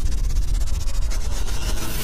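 Logo-intro sound effect: a loud, steady low rumble with a hissing, finely fluttering noise on top.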